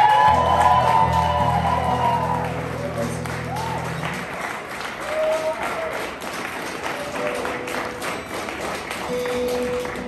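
Audience clapping and cheering with whoops at the end of an acoustic song, while the final chord of the acoustic guitars rings on and dies away about four seconds in.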